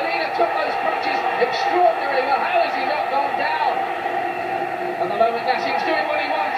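Boxing broadcast sound: a male commentator's voice over steady arena crowd noise.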